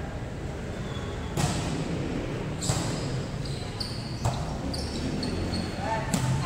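A volleyball thudding against the floor or players' hands: four sharp, echoing thuds about a second and a half apart. High, short sneaker squeaks on the court floor come between the second and fourth thud.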